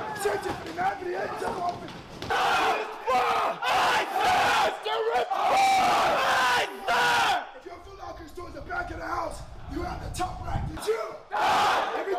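Male recruits shouting together in unison and drill instructors yelling, in several loud bursts of a second or two each, with a quieter stretch of scattered voices shortly before the end.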